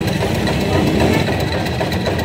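Engine of a roadside sugarcane juice crusher running steadily with a rapid knocking beat.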